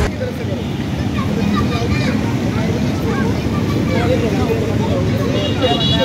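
Children's voices calling and chattering in the background of a busy playground, over a steady low rumble. A brief high-pitched squeal comes near the end.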